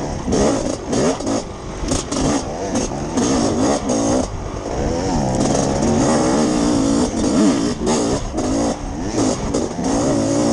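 Two-stroke dirt bike engine being ridden hard, its pitch rising and falling over and over as the throttle is worked and gears change.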